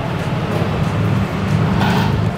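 Steady low rumble of street traffic with cars and motorcycles.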